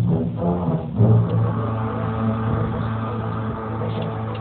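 Symphony orchestra playing, with a long held low note coming in about a second in and sustained under the other parts.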